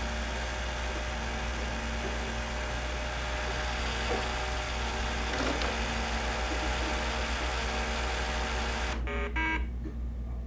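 Small electric motors and plastic gearing of motorized Lego Technic machines whirring steadily, cutting off abruptly about nine seconds in, over a constant low hum.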